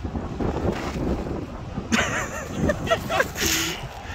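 Wind buffeting the microphone with a steady low rumble. From about halfway in, a man laughs in short bursts.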